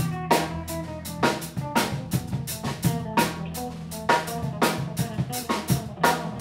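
Live rock band jamming: a Tama drum kit keeping a steady beat with loud strikes about twice a second, under electric bass holding low notes and electric guitars playing.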